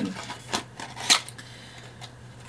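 An advent calendar's cardboard compartment being opened by hand: a few short crackles and clicks, the loudest just after a second in.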